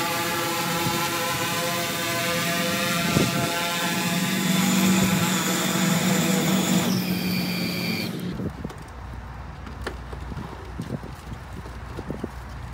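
Hydrogen fuel-cell multirotor drone's propellers humming in flight, a steady buzzing hum made of many layered tones. It cuts off abruptly about eight seconds in, leaving quieter handling noise and a few clicks.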